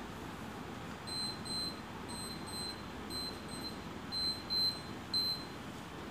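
An electronic alarm beeping in quick double beeps, about one pair a second, starting about a second in, over a steady background hiss.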